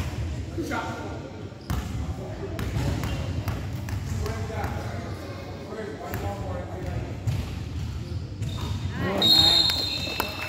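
Basketball gym during a youth game: spectators chattering and calling out in a reverberant hall, with a basketball bouncing on the hardwood floor. About nine seconds in, a loud, shrill whistle blast.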